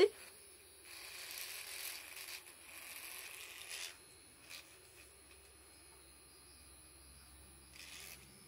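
Faint scratchy rubbing and clicking of a small handheld electric facial massage roller being handled as its head is unscrewed. It lasts about three seconds from about a second in, with one small click a little later.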